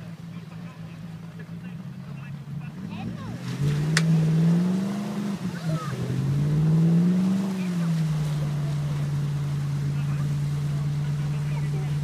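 A 4x4's engine idles, then revs up twice under load from about three and a half seconds in and holds steady at higher revs during a tow recovery of a stuck vehicle out of deep water. A single sharp click comes near the first rev.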